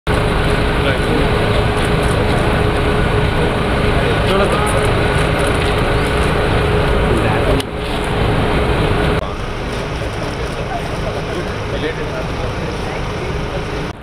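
Loud steady outdoor din of a running vehicle engine's rumble mixed with crowd chatter, the level dropping abruptly about seven and a half and nine seconds in.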